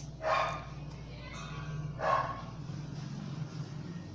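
A dog barking twice in the background, two short barks about two seconds apart, over a steady low hum.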